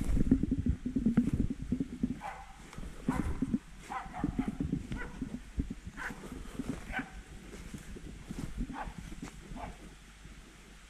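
Fast footsteps crunching through dry fallen leaves on a slope, loudest in the first two seconds. Over them, hunting dogs give about eight short, fainter barks from about two seconds in.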